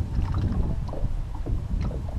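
Steady low rumble of wind and water around a small fishing boat, with a few faint ticks as a fisherman reels a small white perch up out of the water.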